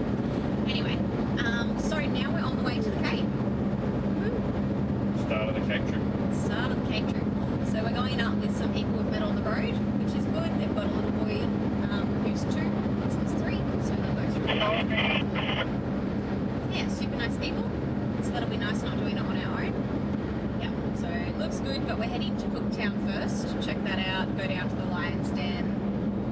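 Steady engine and road drone inside the cabin of a Toyota Land Cruiser 79 Series on the move, with a constant low hum. A brief higher-pitched sound comes about fifteen seconds in.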